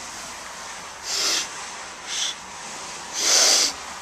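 A person sharply sniffing a pinch of nasal snuff up the nose: three sniffs about a second apart, the last the longest and loudest.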